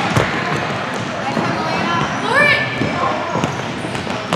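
Futsal ball being kicked and bounced on a hardwood gym floor amid players' footfalls, with a short rising sneaker squeak about two and a half seconds in. Spectators' and players' voices echo in the gym throughout.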